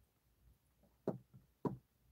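Two light knocks about half a second apart, past the middle, after a near-silent start.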